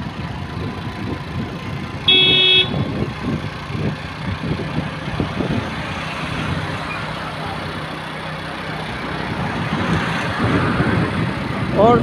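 Steady road and engine noise from a moving vehicle, with a vehicle horn sounding once for about half a second, about two seconds in; the horn is the loudest sound.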